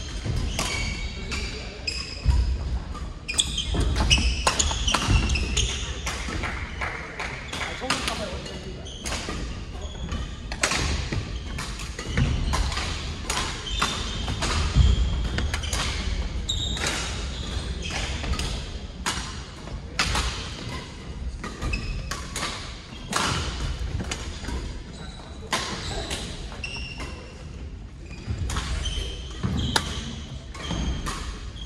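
Badminton play in a large hall with a wooden floor: repeated sharp racket strikes on the shuttlecock, thuds of footwork on the boards and short high squeaks of court shoes, echoing in the hall.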